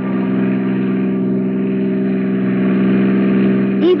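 Car engine running at a steady, even drone: a radio-drama sound effect of a car being driven.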